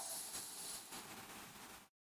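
Faint steady hiss of room tone that slowly fades, then cuts to dead silence just before the end.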